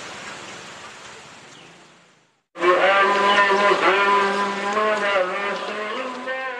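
A steady rushing noise fades out over the first two seconds. After a brief silence, background music with long, held tones in chords comes in loudly about two and a half seconds in.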